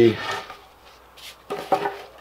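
A man's speech trailing off at the start, then the faint rub and scuff of a wooden board handled in gloved hands, and a short vocal sound near the end.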